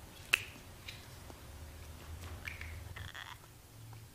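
Communion bread being handled at the altar: one sharp snap about a third of a second in, then a few faint clicks and short crinkly rustles, over a low room hum.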